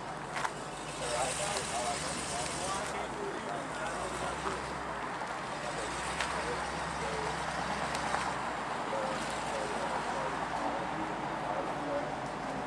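A truck's engine running steadily at low speed while the truck manoeuvres, with faint voices in the background.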